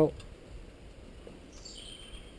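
Faint, steady outdoor background noise, with one short high chirp near the end.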